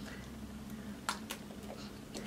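Two light clicks close together a little after a second in, from a clear cream jar being handled in the hands. Otherwise a quiet room with a faint steady hum.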